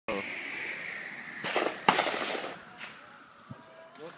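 Gunshots from a shooting range: two sharp shots about half a second apart, each trailing off in an echo, then a couple of fainter pops.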